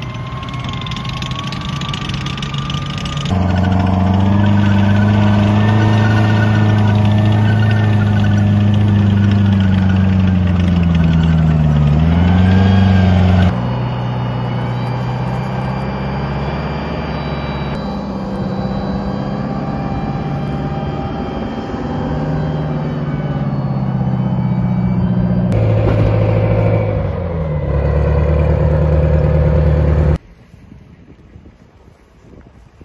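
M109 Paladin self-propelled howitzer's diesel engine running loudly as the tracked vehicle moves. The engine note sags and climbs again once, and the sound changes abruptly in level and pitch several times.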